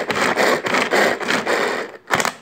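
Pull-cord manual vegetable chopper being worked: quick repeated pulls of the cord spin the blades inside the plastic bowl, giving a rhythmic whirring stroke about four times a second.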